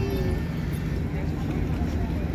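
Indistinct voices of people talking nearby, over a steady low rumble.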